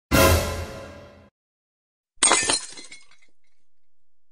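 Glass bottle smashing as a sound effect: a heavy crash with a deep low end that cuts off suddenly after about a second, then a bright glass shatter about two seconds in, tinkling away.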